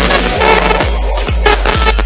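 A song playing back as a merged MP3 file on an Android phone's music player: dense music with a deep kick drum beating steadily, a little over twice a second.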